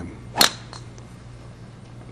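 A golf club striking the ball on a tee shot: one sharp crack about half a second in.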